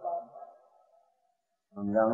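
Only speech: a man's discourse voice trails off, falls into about a second of dead silence, then starts again just before the end.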